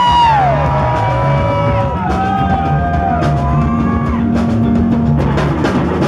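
Live rock band playing: drum kit and bass keep a steady groove under a melody of long held notes that bend up and down in pitch.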